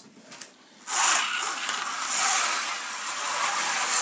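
Slot car starting off about a second in and running on a plastic track: a steady whir from the car's small electric motor.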